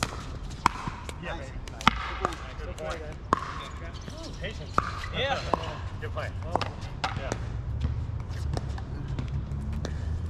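Pickleball paddles striking a plastic pickleball during play: a string of sharp pops at irregular intervals, the loudest a little under two seconds in.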